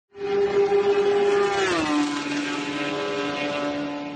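Racing car engine note, starting abruptly and held high and steady, then dropping in pitch about two seconds in like a car passing by, and fading away near the end.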